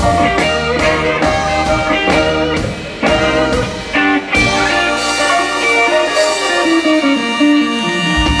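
Live blues band, with electric guitars, piano, trumpet, tenor saxophone, bass and drums, playing the closing bars of a song: a rhythmic figure, a sudden full-band hit about four seconds in, then a held final chord with guitar notes over it.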